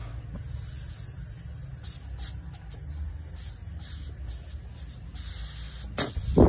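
Breath blown into a pressure cooker lid's vent pipe, with air hissing out in short bursts past the rubber safety fuse under a thumb, the longest burst near the end: the fuse leaks and needs replacing.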